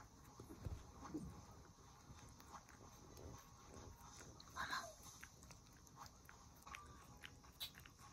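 Faint, wet licking and mouth smacks of a Shiba Inu licking a black cat's ear. One brief falling squeak about halfway through.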